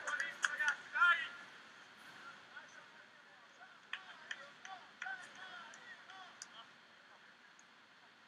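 Voices shouting and calling out across an open sports field, loudest in the first second or so, then fainter calls a few seconds later, over a faint steady hiss of open-air ambience.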